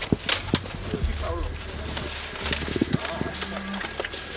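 Knocks and clatter of boxes and a folded table being pushed into a car boot, a few sharp strikes in the first second and more around the middle, with brief talk over them.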